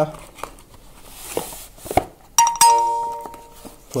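Cardboard flash packaging being handled, with a few light taps and a short scrape as the inner box slides out. About two and a half seconds in, a bright bell-like chime rings out and fades over about a second.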